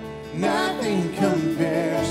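Live worship band music: after a short lull, several voices come back in singing about half a second in, over the band's guitars and keyboard.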